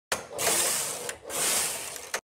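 Knitting machine carriage run across the needle bed twice, back and forth, a rattling mechanical swish of about a second each way, with a sharp click at the start and another just before it cuts off suddenly.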